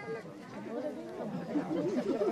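Low background chatter of several voices talking at once, well below the level of the stage dialogue and growing a little louder toward the end.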